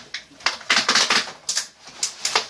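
Plastic clattering and rustling as a seedling tray is handled and set down, a cluster of sharp knocks and scrapes in the middle second.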